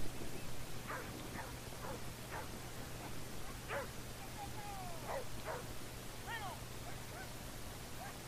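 Dog yipping and whining faintly: about a dozen short, high calls scattered through, some sliding down in pitch.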